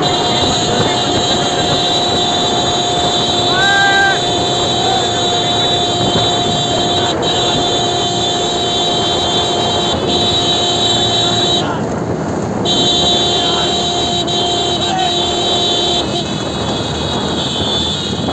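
Motorcycle engines running steadily at riding speed, with wind rush and voices over them. A steady engine tone holds until about sixteen seconds in, then drops away.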